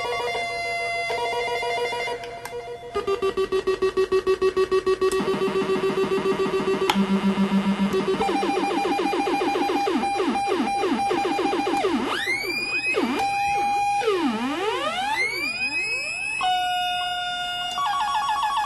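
SE-2 New Roots Type dub siren (reggae "pyun pyun" siren machine) played by its knobs: steady electronic tones that step between pitches, then a fast pulsing tone, then rapid repeated falling "pew" zaps, and near the end long swooping sweeps that rise and fall before settling on steady tones again.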